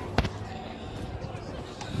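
One sharp thump about a fifth of a second in, with a second, smaller knock near the end, over a murmur of voices.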